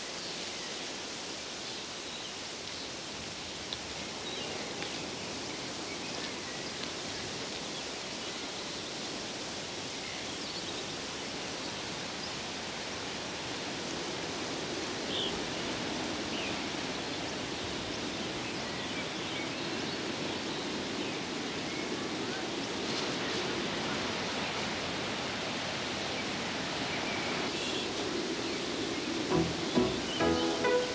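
A steady rushing noise with soft background music that swells in the second half.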